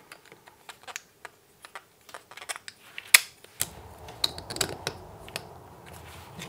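Small plastic parts clicking and tapping as a circuit board and camera block are fitted into a white plastic housing: a string of sharp, irregular clicks, the loudest about three seconds in. From about three and a half seconds a steady low background noise comes in under the clicks.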